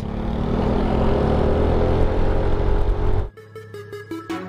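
Yamaha scooter riding with its engine running and road and wind noise, the engine tone rising slightly in pitch. About three seconds in it cuts off suddenly and electronic intro music begins.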